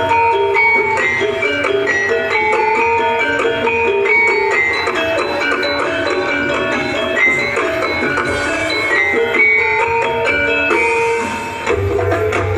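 Live Javanese music accompanying a kethek ogleng dance: a melody of pitched percussion moving in steps over a steady low bass. The bass drops out briefly just before the end and comes back.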